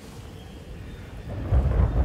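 Film sound effect of a body disintegrating into dust: a low rumble that swells about one and a half seconds in into a loud, gritty rush of noise.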